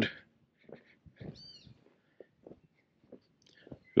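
Soft footsteps on a cobbled stone lane, a few faint scattered steps, with a brief high-pitched chirp-like sound a little over a second in.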